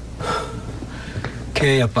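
A man's short breathy gasp a fraction of a second in, then a loud spoken exclamation near the end.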